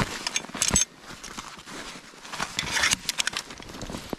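A sprung steel leghold trap being pulled up out of the snow: snow crunching and scraping, with clusters of sharp metal clinks from the jaws and chain about half a second in and again around three seconds.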